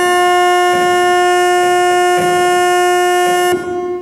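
A church organ holding one loud, steady note with a rich, buzzy tone, cut off abruptly about three and a half seconds in.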